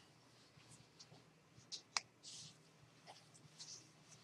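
Near silence: room tone, with a few faint clicks, one sharper about two seconds in, and a short soft hiss just after it.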